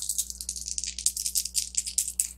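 A handful of polyhedral gaming dice (three d8s and a d4) shaken in the hand before a roll, a fast, continuous clattering rattle of many small clicks.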